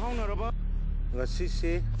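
Voices of people, fainter than a news voice, heard twice in short bursts over a steady low hum.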